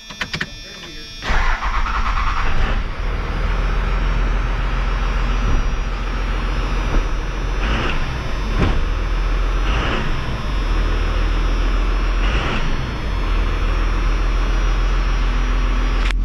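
A 5.9 12-valve Cummins turbo diesel cranks on the starter for about a second, then fires and settles into a steady run, heard from inside the cab. A few short revs come around the middle. The engine has just been fitted with governor springs and a number 10 fuel plate.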